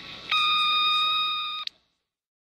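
A single steady electronic beep, about a second and a half long, starting and stopping abruptly with a click.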